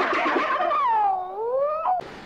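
A drawn-out cry, rough at first, then a clear tone that falls and rises again in pitch before cutting off near the end.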